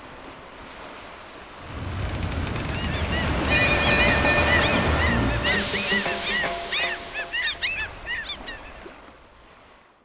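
Surf washing in about two seconds in, with many short, high gull calls from about three to eight seconds in, all fading out near the end.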